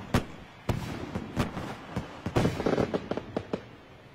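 Celebratory fireworks bangs in an irregular string of sharp reports, with a quicker cluster in the second half, then fading away near the end.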